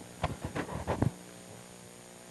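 A steady electrical mains hum, with a few short fragments of speech in the first half that stop about a second in.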